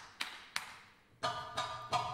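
Live Egyptian ensemble music in a sparse, accented passage: six sharp struck notes in two groups of three, each ringing briefly and dying away before the next.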